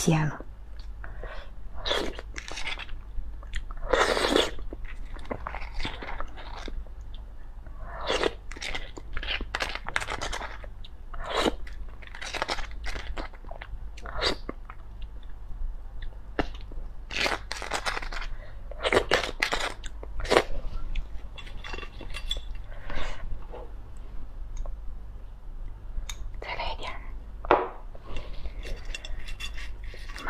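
Close-miked eating of raw sea urchin roe: wet chewing and mouth sounds in irregular short bursts, over a steady low hum.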